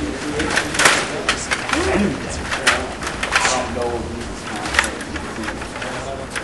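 Stiga table hockey game in play: irregular clacking and knocking of the rods and plastic players being worked, with people talking in the background.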